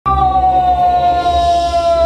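A man's long, high scream, held on one pitch that sinks slowly.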